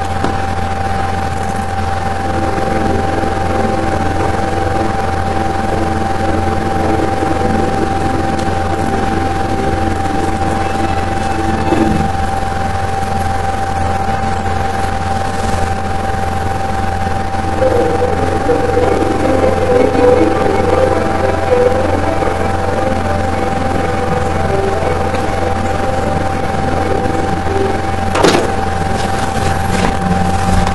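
Music played faintly through window glass by a homemade sound bug (a soft-iron core wound with a couple of hundred turns of wire, with small neodymium magnets), the whole pane acting as the speaker; it is hard to hear over a loud steady hum and a steady high tone. A sharp click near the end.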